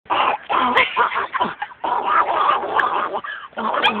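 A person making a raspy, buzzing Donald Duck–style voice in several short bursts, used as a beatbox.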